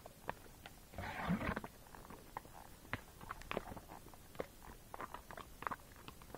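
A Tennessee Walking Horse walking on a dry dirt trail: irregular hoof clicks and scuffs, with a louder rustling scrape about a second in.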